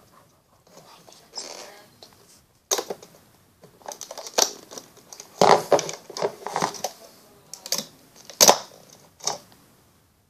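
Irregular clicks and taps of a plastic hook and rubber loom bands being worked on a plastic loom, starting about three seconds in and loudest near the middle.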